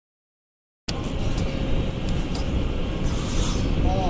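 Workshop machinery running with a steady mechanical noise that starts abruptly about a second in, heavy in the low end, with a few light clicks and a short hiss near the end.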